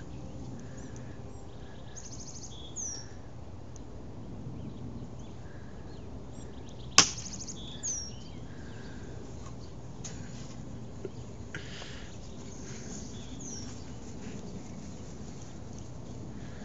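One sharp crack about seven seconds in as a plastic toy bat hits the ball off a toy batting tee, with a lighter knock just after. Small birds chirp now and then over a quiet outdoor background.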